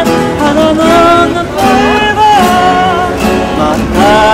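Man singing a song to his own strummed acoustic guitar.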